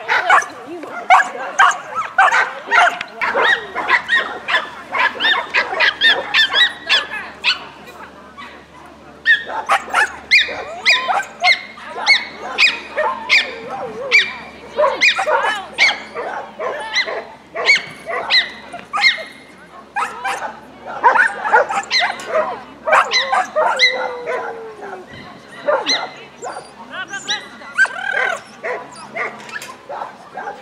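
A dog barking over and over in quick, excited runs while it works an agility course, with a couple of short pauses.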